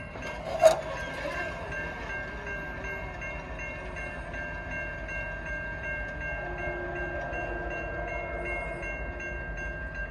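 Railroad crossing signal's electronic bell ringing steadily at about four strokes a second while the lights flash. A single sharp knock comes just under a second in.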